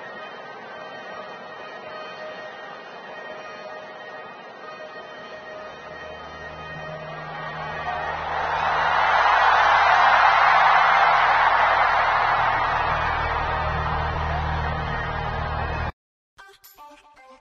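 Arena concert sound system playing low droning intro music, with a large crowd's cheering and screaming swelling up about halfway through, loudest a couple of seconds later, then easing off; the sound cuts off abruptly at the end.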